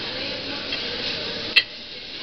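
Cooking pans and utensils clinking at a gas-burner omelette station over a steady background hubbub, with one sharp click about one and a half seconds in.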